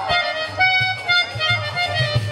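Harmonium playing a quick melodic run of short held notes over a low drum beat, the instrumental lead-in to a devotional song.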